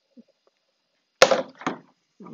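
A single sharp knock about a second in, followed by a brief clatter and a smaller second knock, as tools are handled on the workbench.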